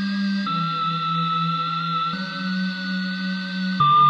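Slices of a sampled E flat minor music loop played back one after another from Logic Pro for iPad's Quick Sampler: held tones over a bass note that jump to a new pitch about half a second in, at about two seconds, and again near the end.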